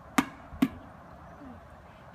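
A rubber ball pushed against a concrete block wall and caught: two sharp smacks, the ball hitting the wall and then landing in the hands, about half a second apart.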